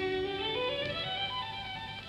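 Violin playing a quiet melodic line of held notes that move by step, in a 1940s recording of a violin sonata.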